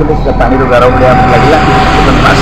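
Voices over continuous vehicle traffic noise, a low rumble with hiss. A single steady tone is held through the second half.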